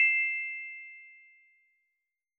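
Notification-bell 'ding' sound effect of a subscribe-button animation, ringing at two bright high pitches and fading away over about a second and a half.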